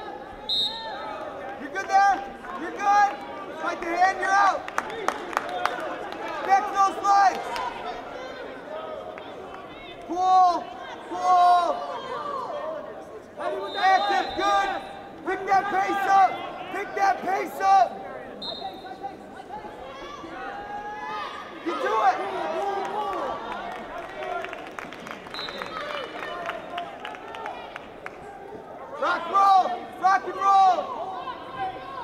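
Shouted voices and crowd noise echoing in an indoor arena during a wrestling bout, with scattered short knocks.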